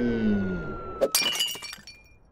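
A falling tone glides down, then about a second in a ceramic horse figurine smashes on a wooden floor. It shatters with a burst of crashing and tinkling pieces that rings briefly and dies away.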